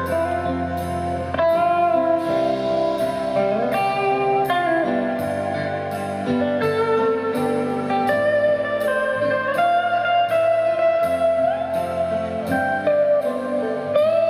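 Live instrumental passage of a slow ballad: an electric guitar plays the melody with bent, gliding notes over steady grand piano chords.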